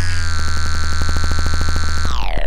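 Electronic dubstep music: a synthesizer holds one steady low chord, chopped into a rapid, even stutter, in the closing seconds of the track.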